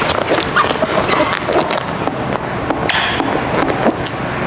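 A plastic squeegee and fingers working wet paint protection film onto a car's side mirror cap: irregular short squeaks and rubbing of plastic on wet film, with crinkling of the loose film.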